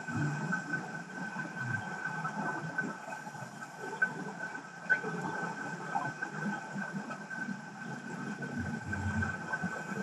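Underwater ambience picked up by a camera in its housing on the seabed: a low, irregular rumble of moving water under a steady high tone, with a few sharp clicks about four and five seconds in.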